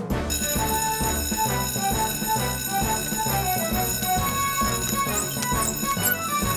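A fire-station alarm bell rings steadily, starting just as the alarm button is pressed, over up-tempo cartoon action music with a pulsing bass and a melody of short stepping notes.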